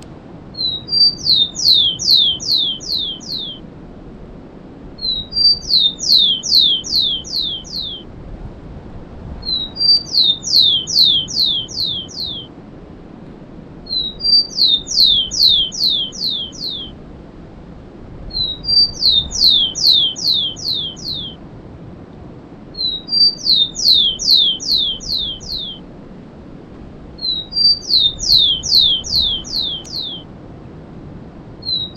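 Rufous-collared sparrow (tico-tico) singing its 'cemitério' song type. Each song is two or three short high notes followed by a quick run of five or six descending whistled notes, repeated the same way about every four seconds, seven times, over a faint steady hiss.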